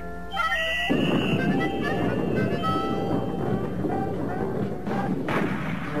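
Cartoon music score. About a second in, a dense, low noisy sound effect comes in suddenly under the music and lasts about four seconds, with a sharp hit near the end.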